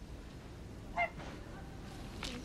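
A domestic goose gives a single short honk about a second in, over faint outdoor ambience.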